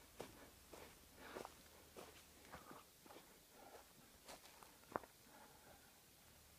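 Faint footsteps: soft, irregular steps roughly every half second, with one sharper click about five seconds in.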